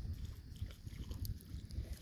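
A German Shepherd wading through shallow water at a gravel shore, its steps making soft splashes, over a low, uneven rumble.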